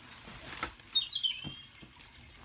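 Soft knocks and rustles from a phone being handled and set up. About a second in there is a short, high chirp-like squeak that falls in pitch.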